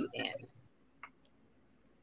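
A woman's voice trailing off, then near quiet broken by a single faint click about a second in.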